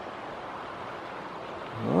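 Steady wind rushing over the microphone, an even hiss with no distinct events.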